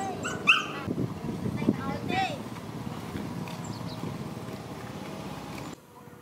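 A dog giving a few short yelps and barks in the first two and a half seconds, the loudest about half a second in, with voices in the background.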